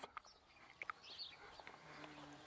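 Near silence: quiet outdoor air with a few faint, short bird chirps about a second in.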